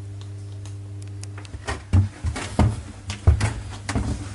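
Footsteps on wooden deck planks: a string of irregular thumps starting a little under two seconds in, over a steady low hum.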